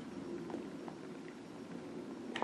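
Quiet room tone with a few faint small ticks, likely light paper and hand contact on a booklet page.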